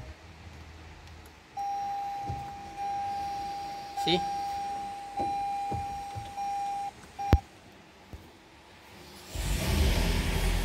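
Lexus ES300h dashboard warning chime: a steady single-pitch beep sounding for several seconds with brief breaks, followed by a sharp click. Near the end the hybrid's four-cylinder petrol engine starts and runs.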